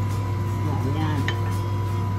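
A steady low electrical hum fills the kitchen, with faint, sparse crackling from chopped garlic just starting to fry in a little oil in a wok.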